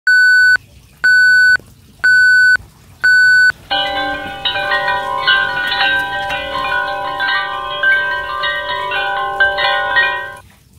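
Four identical electronic beeps, one a second, each about half a second long. Then instrumental intro music with many held notes.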